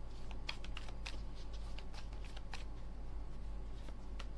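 A deck of playing cards being shuffled and handled by hand: a quick run of crisp card snaps and flicks for about two and a half seconds, then quieter, sparser handling as a card is drawn. A low steady hum sits underneath.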